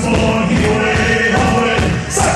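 Celtic rock band playing live, with drums, fiddle and guitar and voices singing.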